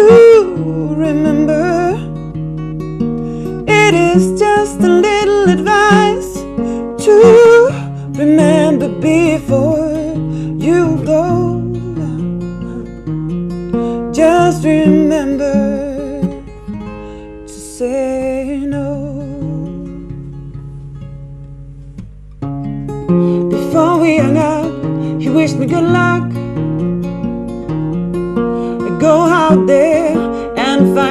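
A woman sings a slow song in English, accompanying herself on a steel-string acoustic guitar. Past the middle the voice stops for a few seconds while the guitar carries on more softly, then the singing comes back.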